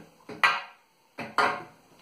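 Hard plastic clatter from a wet and dry vacuum's hose and tool adapter being handled: a sharp clack about half a second in and another knock just over a second in.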